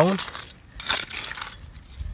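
Hands pressing and scraping dry, gritty soil around the base of a transplanted seedling: a few short soft scrapes, the clearest about a second in.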